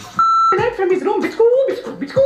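A short electronic bleep, one steady tone lasting about a third of a second, cuts in just after the start. A man's speech carries on right after it.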